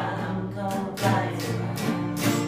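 Two acoustic guitars strummed together, a new chord struck about once a second, with a young male voice singing along.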